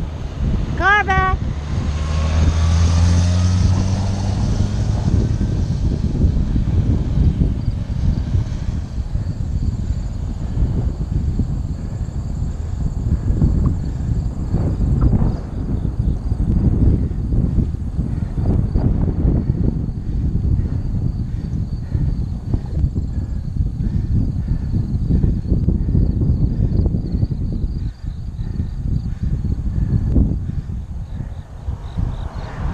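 Wind buffeting the microphone of a bicycle-mounted action camera while riding, a steady low rumble with gusty bursts. In the first few seconds a car overtakes from behind, its engine and tyre hum swelling and then fading.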